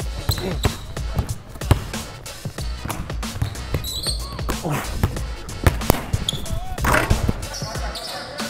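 Basketballs bouncing on a hardwood gym floor, a string of irregular thuds from several balls, over background music.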